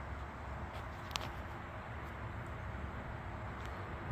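Low, steady background hum with one light click about a second in.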